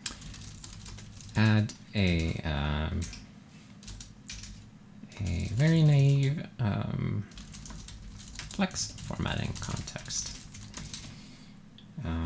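Typing on a computer keyboard, a run of quick key clicks, with a man's voice sounding twice in between without clear words, about a second and a half in and again around the middle.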